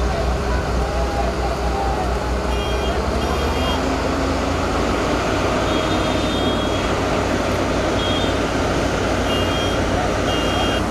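Heavy diesel machinery running steadily, with short high electronic warning beeps sounding in several brief groups.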